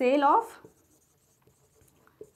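Marker pen writing on a whiteboard, faint strokes after a brief spoken sound at the very start.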